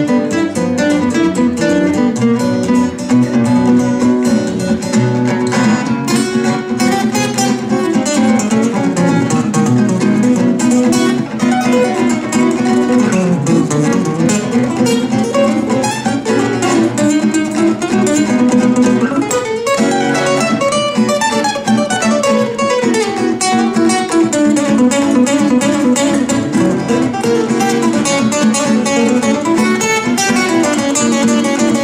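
Two acoustic guitars playing an instrumental jazz break: a quick single-note guitar solo with running descending phrases over strummed rhythm chords.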